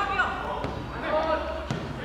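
Players' voices calling out across a football pitch, with two sharp thuds of the football being kicked, about a third of the way in and near the end.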